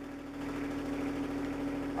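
A John Deere 1025R compact tractor's three-cylinder diesel engine idling steadily, heard as a low, even hum with a steady tone.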